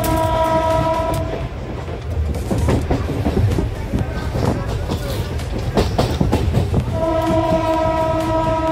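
Train horn sounding one steady note near the start and again from about seven seconds in, heard from inside a moving electric train. In between, the wheels rumble and clatter over the rails.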